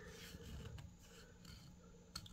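Near silence, with faint rubbing of a hand on the hardboard back panel of a particleboard bookcase as it is pressed flush.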